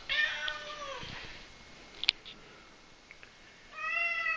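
Cat meowing twice with crow-like calls: one long call falling in pitch at the start, and a second one starting near the end. A short sharp click comes between them.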